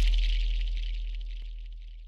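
The tail of an intro sound effect fading out steadily: a deep low tone and a thin hiss die away to near nothing.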